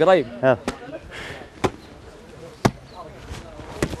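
A football being kicked: single sharp thuds about a second apart, four or five in all, with a short shout before the first.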